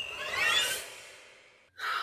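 A woman's long breathy sigh that swells and then fades away over about a second.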